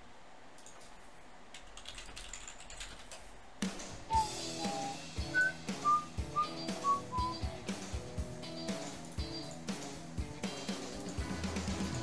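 Faint clicking of a computer keyboard, then background music comes in about a third of the way through: a high melody of short single notes over a steady beat.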